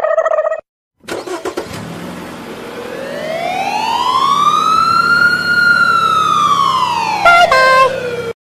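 Cartoon police-car sound effect. A short steady tone at the start, then about a second in an engine starts and runs under one slow siren wail that rises and falls over about five seconds. A few quick stepped tones come near the end.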